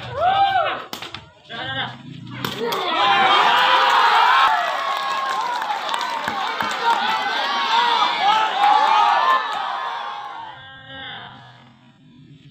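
A couple of sharp smacks of a sepak takraw ball being kicked, then a crowd of spectators shouting and cheering loudly for several seconds as the rally ends, fading near the end.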